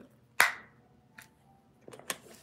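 Drinking from a thin plastic water bottle: one sharp click, the bottle's plastic popping, about half a second in, then a couple of faint small clicks.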